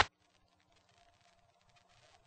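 Near silence: the soundtrack cuts out abruptly at the start, leaving only a very faint trace.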